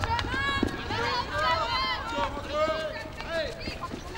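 Several voices calling and shouting at once on a hockey pitch, short overlapping calls with no clear words, over a steady low rumble.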